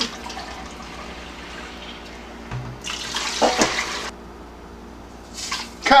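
Liquid for pickling brine poured from a glass jar into a stainless steel stockpot: a steady pouring hiss, with a louder spell of pouring about three seconds in that lasts just over a second.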